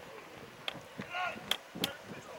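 A football being kicked in open play: several short, sharp thuds, the loudest near the end, with a player's brief shout in the middle.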